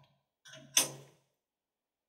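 Clamping lever on the jaw of a resistance butt welding machine being swung over, with one sharp metallic click about three-quarters of a second in.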